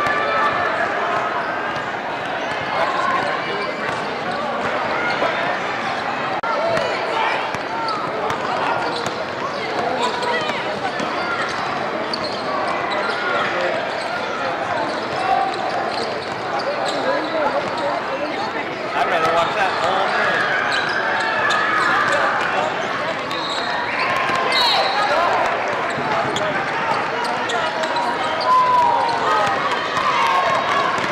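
Sound of a basketball game in play: many voices from players and spectators talking and shouting over one another, and a basketball bouncing on the court. A brief high-pitched squeak comes a little past two-thirds of the way through.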